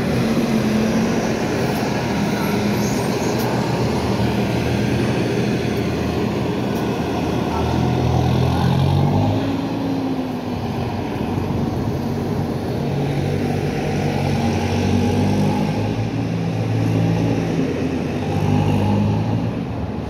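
New Flyer E40LFR electric trolleybus pulling away and driving off: its drive machinery runs with low steady hums that step in pitch, and one tone rises and falls about nine to ten seconds in, over street traffic noise.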